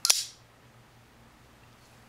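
RJ Martin Q36 flipper knife flicked open: one sharp metallic click as the blade snaps into lockup, ringing briefly.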